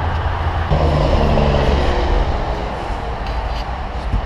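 Low, steady rumble of a motor vehicle, with an engine hum that swells between about one and two seconds in.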